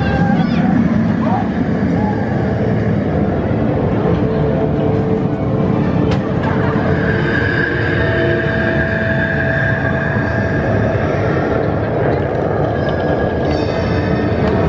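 Bolliger & Mabillard wing coaster train running along its steel track, a steady rumble, mixed with people's voices and music; held steady tones join in about halfway through.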